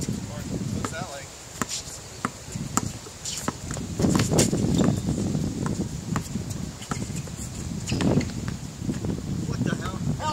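A basketball bounces on a hard outdoor court in sharp thuds at irregular intervals, with players' footsteps. Wind rumbles on the microphone underneath.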